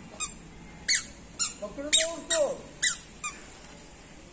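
Toddler's squeaky shoes chirping with each step, about seven short high-pitched squeaks roughly two a second.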